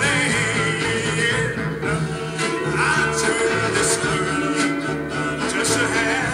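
A 1960s popcorn-style oldies record playing: a singer over a band, with a steady beat.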